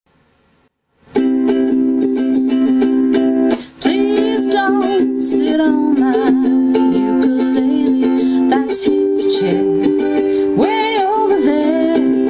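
Ukulele strummed in a steady rhythm of chords. It starts about a second in, after a moment of near silence, and breaks off briefly near four seconds.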